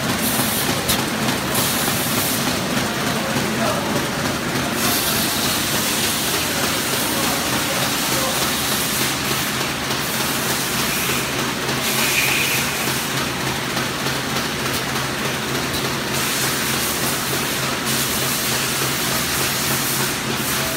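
Square-bottom paper bag making machine running steadily: a continuous mechanical noise with a low hum underneath.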